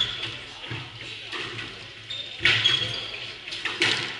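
Squash rally: the ball is cracked by a racket and smacks off the walls in sharp strikes, right at the start, about two and a half seconds in and just before the end. Short high squeaks of court shoes on the wooden floor follow the first two strikes.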